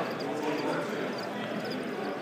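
Feeder crickets in stacked cardboard shipping boxes, chirping in a steady, rapid, high-pitched pulsing, over background crowd chatter.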